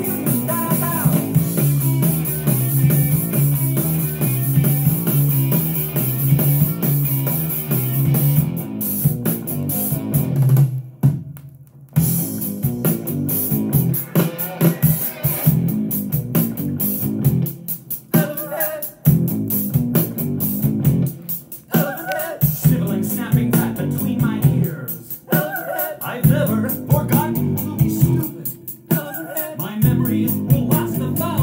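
Rock song with electric guitar and drums, played from a vinyl record on a turntable. The band stops short for about a second roughly eleven seconds in, then comes back in.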